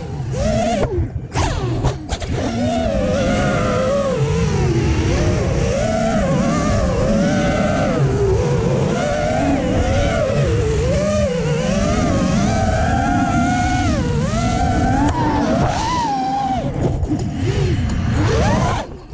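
An FPV racing quadcopter's brushless motors running hard, their whine constantly rising and falling in pitch as the throttle is worked through the turns.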